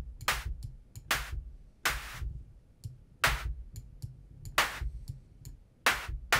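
Synthesized snare from Retrologue: short bursts of high-pass-filtered white noise with a quick decay, about six hits in a loose drum pattern. Short ticks fall between the hits.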